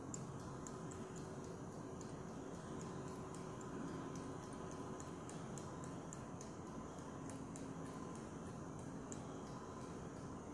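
Faint, irregular ticking, a few ticks a second, over a steady low hiss as fly-tying thread is wrapped up a hook shank held in a vise.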